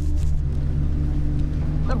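A vehicle engine running at a steady idle: an unbroken low drone.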